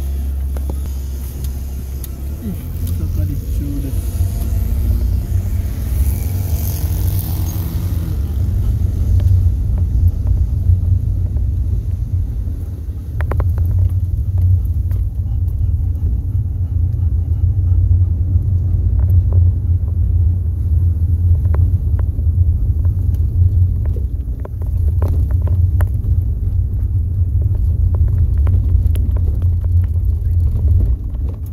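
Low, steady engine and road rumble inside a car's cabin as it pulls away and drives on a narrow road, the engine note rising over the first several seconds as it gathers speed. Occasional light knocks and rattles sound over the rumble.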